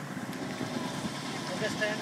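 Small boat's motor running steadily as the boat moves through the water, with a voice shouting near the end.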